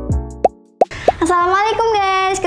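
An intro jingle's music with low thumps that drop in pitch ends about half a second in, followed by two quick rising 'plop' sound effects; a woman's voice starts just after the first second.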